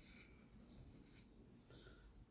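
Faint scratching of chalk being written across a small rock, in short strokes.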